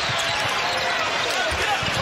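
Basketball dribbled on a hardwood court: a run of low bounces over steady arena crowd noise.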